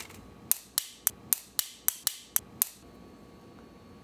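A run of about nine sharp, crisp clicks, roughly four a second, from about half a second in until near three seconds, as if a small hand-turned mechanism were being worked.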